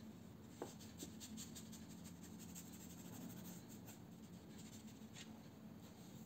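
Faint, soft strokes of a watercolour brush on paper, over a low steady hum, with a small click about half a second in.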